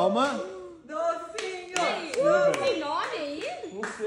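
Several voices talking excitedly, with a few sharp clicks in between.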